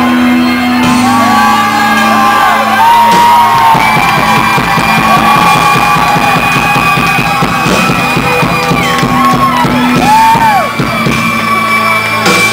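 Live rock band playing loud in a club hall, with long held high guitar notes and pitch bends over the drums and bass.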